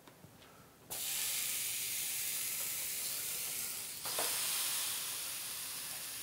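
Raw steak sizzling on the preheated plates of a T-fal OptiGrill contact grill. The sizzle starts suddenly about a second in and holds steady, with a brief knock about four seconds in as the lid comes down.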